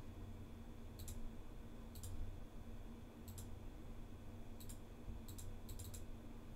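Computer mouse clicking, about seven short, sharp clicks at uneven intervals, as points of a lasso selection are placed one by one. A faint steady hum runs underneath.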